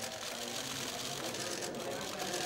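Murmur of a crowd of voices with rapid bursts of camera shutter clicks from press photographers' SLR cameras.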